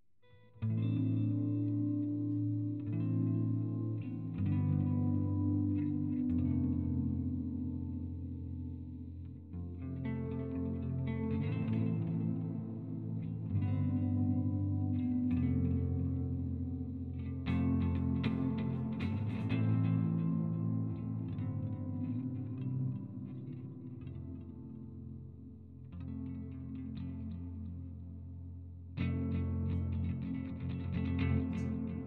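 Electric guitar played with a clean tone: chords that ring on and change every second or two, starting about half a second in. The playing softens for a few seconds near the end, then comes back louder just before the close.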